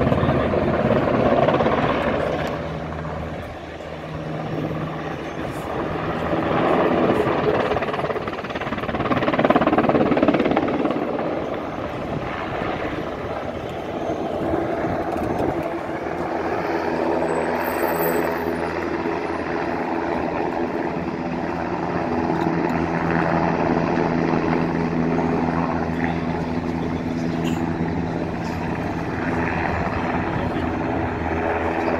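NH90 twin-turbine military helicopter flying, its rotor and turbine sound swelling and fading as it moves about, loudest near the start and about ten seconds in.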